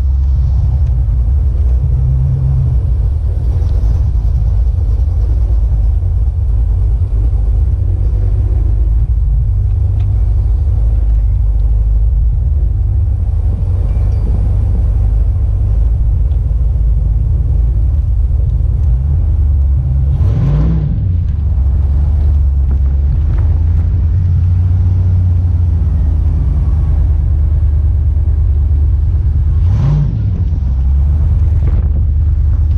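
An OBS GM full-size pickup's engine and exhaust, heard from inside the cab while driving: a steady, loud low rumble. The engine is briefly revved up and back down about two-thirds of the way through, and again near the end.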